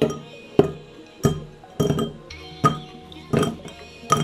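Frozen coffee ice cubes clinking into a tall glass as they are dropped in one at a time, about six sharp clinks in four seconds.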